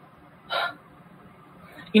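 One short breathy vocal sound from a woman, about half a second in, against quiet room tone.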